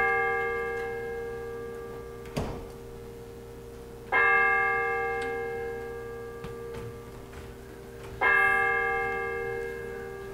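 A bell tolling slowly, struck about every four seconds, each stroke ringing and fading away before the next. There is a single short knock between the first two strokes.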